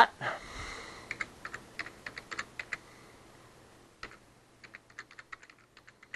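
Computer keyboard being typed in two short bursts of key clicks, with a pause of about a second between them.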